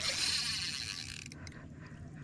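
Spinning reel's drag buzzing as a big striped bass pulls line off against it, a fast ratchet-like whir for just over a second before it stops.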